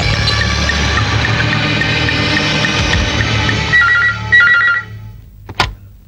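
Background film score holding a sustained chord, then a desk telephone rings in two short trilling bursts near the end, after which the music stops.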